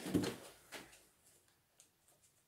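A cardboard parcel being handled and rummaged through: a soft thump and rustle at the start, a short knock just under a second in, then a few faint rustles.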